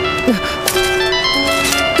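A phone's ringtone melody: a simple tune of clear, held electronic notes stepping from one pitch to the next, with an anxious feel.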